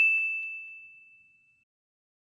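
A single high, bell-like ding sound effect, its ring fading away within about a second and a half.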